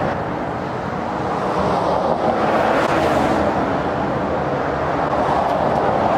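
Road traffic on a nearby street: a steady rush of car tyre and engine noise that swells as a vehicle passes about two to three seconds in.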